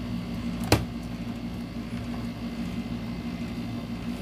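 A steady low hum in a small room, with one sharp click about three-quarters of a second in.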